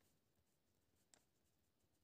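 Near silence, with one very faint tick about a second in.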